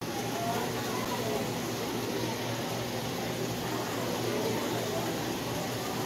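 Steady rushing and trickling of running water from aquarium filtration, with faint indistinct voices in the background.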